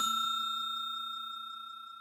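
Bell chime sound effect of the kind used for a subscribe and notification bell, ringing out after its strike and fading steadily away.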